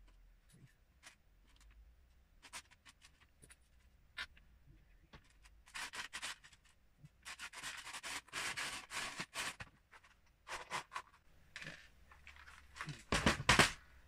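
Loose plastic Lego bricks clicking and rattling as a hand rummages through them in a plastic storage tub, with longer stretches of rustling about halfway through and a loud clatter just before the end.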